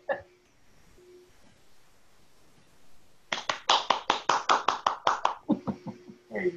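A quick run of hand claps, about a dozen in two seconds at an even, rapid pace, starting about three seconds in after a few seconds of quiet room tone.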